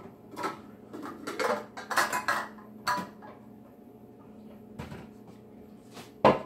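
Metal pots and pans clanking and knocking together as a saucepan is dug out of a crowded lower kitchen cabinet: a quick run of clanks over the first three seconds, then a single knock near the end.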